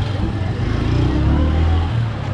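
Street traffic: a motor vehicle engine running with a steady low hum, and faint voices behind it.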